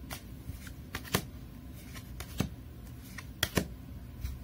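Tarot cards being handled and shuffled: scattered sharp snaps and clicks of card stock, the loudest a little over a second in and a close pair about three and a half seconds in.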